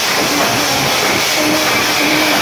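Live rock band playing loud, with drums, bass and electric guitars, heard as a dense, distorted wash of sound with no pause.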